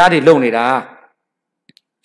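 A man's voice speaking Burmese close into a handheld microphone for about the first second, then a pause broken by a couple of faint clicks.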